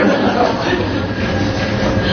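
Lecture audience reacting to a joke with a steady wash of crowd noise.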